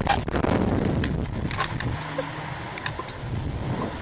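Wind rushing and buffeting over the microphone of a camera on a reverse-bungee ride capsule as it swings and tumbles through the air.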